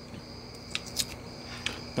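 A few light, sharp clicks from the wire clasp and stopper of a swing-top beer bottle being worked by hand, the strongest about halfway through.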